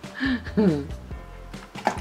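Background music, with a short falling vocal sound in the first second and a single sharp click near the end as a plastic tooth is pulled out of a toy shark's jaw.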